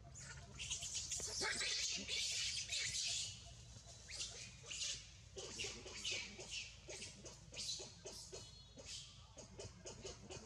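High-pitched animal chirps and squeaks in quick bursts, densest and loudest in the first three seconds, then coming in shorter spurts.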